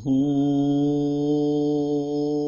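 A man singing a Kannada harvest folk song, holding one long steady note from just after the start, in a chant-like style.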